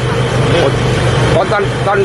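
A man speaking Thai over a steady low engine hum from an idling vehicle.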